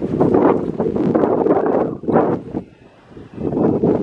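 Wind buffeting the microphone in gusts, a heavy low rumble that dips to a lull about three seconds in.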